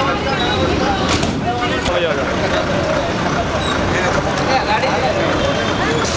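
Several people's voices talking indistinctly over a steady low background rumble.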